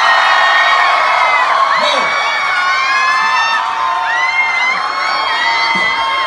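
A live audience cheering, with many high-pitched whoops and yells overlapping.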